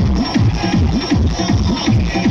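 Loud electronic dance music played through a stacked DJ sound system of large speaker cabinets, dominated by a heavy bass line that slides up and down in pitch several times a second over a steady beat.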